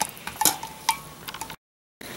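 A long spoon stirring liquid in a glass pitcher, clicking and clinking lightly against the glass a few times. The sound then cuts off abruptly to silence about one and a half seconds in.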